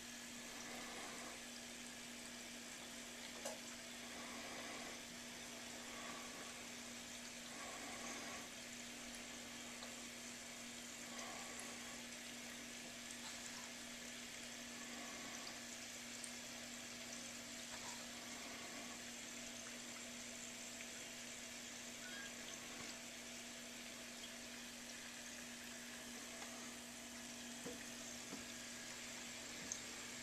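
Aquarium running quietly: water bubbling and trickling with a steady low hum, and a few faint ticks.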